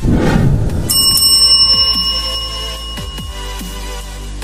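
Electronic intro music with a heavy low hit at the start, then a bright bell ding sound effect about a second in that rings on and fades over about three seconds.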